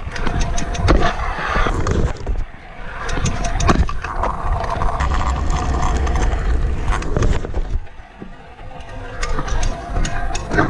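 Freestyle stunt scooter rolling over asphalt: a steady rumble from the wheels, with rattling from the deck and bars and several sharp clacks of landing or striking. It goes quieter about eight seconds in before picking up again.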